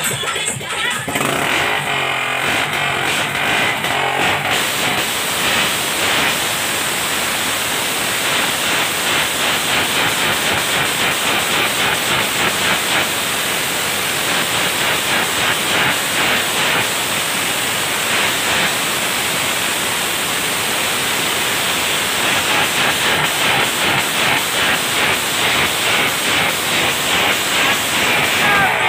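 Motorcycle engine running and being revved, a loud, steady exhaust noise with fast pulsing, with music playing underneath.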